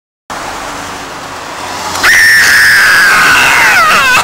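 A young woman's long, high-pitched scream that starts suddenly about two seconds in and is held for about two seconds, its pitch sliding down at the end.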